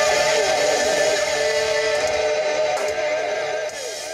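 Live rock band with electric guitars holding a sustained chord that gradually fades, with a few short downward pitch slides near the end.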